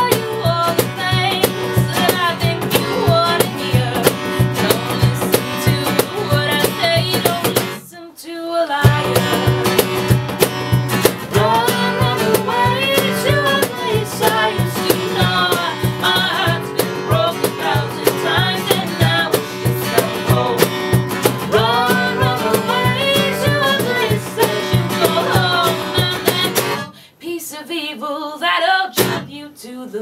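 Live acoustic performance: acoustic guitar playing with a singing voice, the music dipping briefly about eight seconds in and again near the end.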